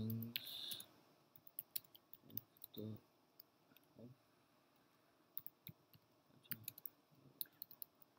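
Computer keyboard keys clicking in quick, irregular runs as a sentence is typed, faint and sharp.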